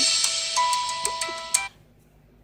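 Closing music of a movie trailer's end screen: a bright hiss with steady held tones and a few sharp clicks, cutting off abruptly about a second and a half in as the video ends.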